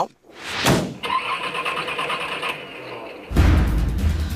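Edited transition sound effects: a quick rising whoosh, then a rhythmic mechanical whirring for about a second and a half, followed by a loud music bed with deep bass that comes in about three seconds in.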